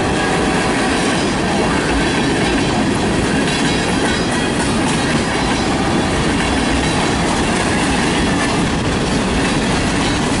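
Freight train of tank cars rolling past close by: a steady, loud rumble and rattle of steel wheels on rail.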